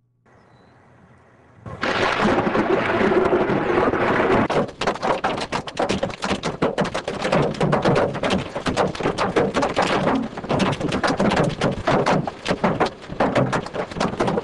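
Heavy hail pelting down: a dense, rapid clatter of hailstone impacts that starts suddenly about two seconds in and keeps up without let-up.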